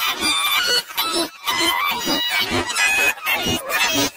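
Heavily distorted, pitch-shifted audio effect applied to a commercial's voice and music, coming out as a dense, harsh, choppy sound with several brief drop-outs.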